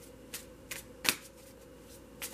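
Tarot cards being handled off-camera: three short, light card clicks spread over about a second, the last the loudest, against a quiet room.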